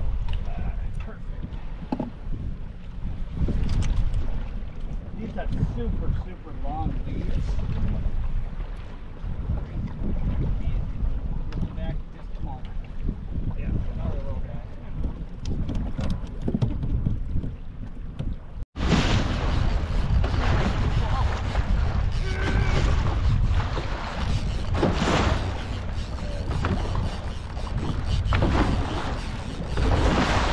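Wind rushing on the microphone over the sound of a small boat trolling through waves. The sound drops out for an instant about two-thirds through and comes back brighter and hissier.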